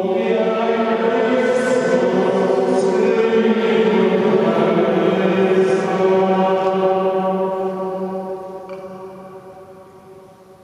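Voices chanting together in unison on a held reciting pitch, the words' s-sounds hissing through a few times, the sound then fading away slowly over the last few seconds.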